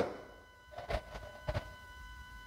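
A pause between spoken sentences: two soft, low thumps about a second and a second and a half in, over a faint steady high whine.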